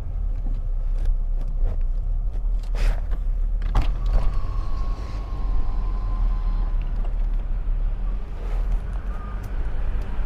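Low, steady rumble of a car's engine and tyres heard from inside the cabin while driving slowly, with two short knocks about three and four seconds in.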